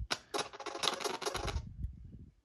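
Playback of an edited screen recording's own audio: a dense, rapid run of clicks that fades out near the end. The clicks are part of the recorded video itself.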